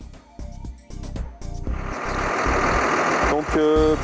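An engine running, louder from about halfway through, with a man's voice coming in near the end.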